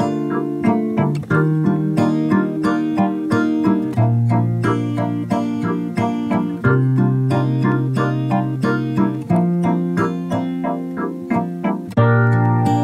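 Instrumental music led by a keyboard playing quick, even notes over held bass notes that change every few seconds.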